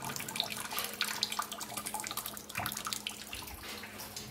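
Kitchen faucet running into a stainless steel sink while a green-cheeked conure bathes under the stream, flapping and splashing, with many small irregular splashes over the flow.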